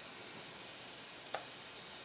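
Quiet room hiss with a single short click a little past halfway, as the two round puck-shaped laptop-stand feet are handled.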